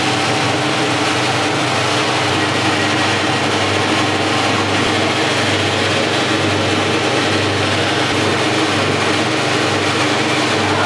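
Dough-kneading machine running steadily, its electric motor humming as the mixing arm turns in the stainless-steel bowl, working gram flour, salt and oil into dough.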